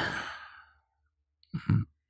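A man's soft, breathy sigh trailing off, then after a short pause a brief two-part breathy murmur near the end.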